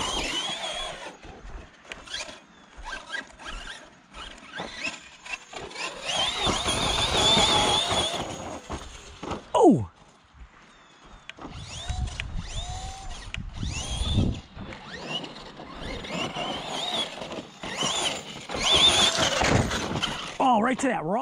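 Electric RC truck running hard on battery power: a high motor whine that rises and falls again and again with the throttle, mixed with short knocks and scuffs from the truck on the ground.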